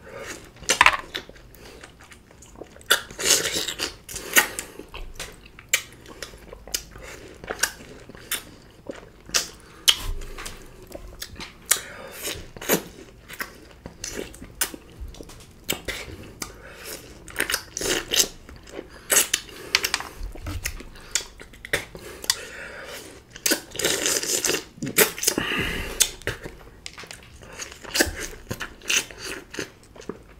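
Close-miked eating of juicy green orange wedges: wet bites, sucking and chewing, with many sharp irregular smacks and clicks. The chewing thickens about three seconds in and again around twenty-four seconds in.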